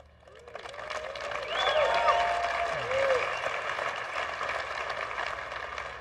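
Large audience applauding, with a few whoops and cheers rising over the clapping. The applause swells over the first two seconds, then carries on steadily.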